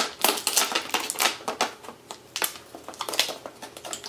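Plastic clamshell packaging of a Corsair RAM kit being pried open by hand: a run of sharp, irregular plastic crackles and clicks.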